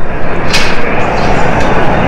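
Loud, steady background din of a busy exhibition hall, with one sharp knock about half a second in.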